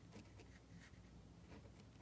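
Faint scratching of a pen writing on a paper worksheet, a few short strokes.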